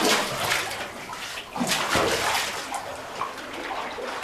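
Water splashing and sloshing as cavers move through a flooded rock tunnel, in uneven surges, with the loudest right at the start and again around halfway through.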